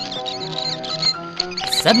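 Soft background music with held notes, with high, quick mouse squeaks over it as a sound effect.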